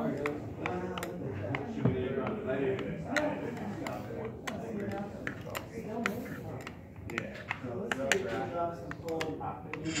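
Indistinct voices of several people talking, with scattered short, sharp clicks and light clinks throughout.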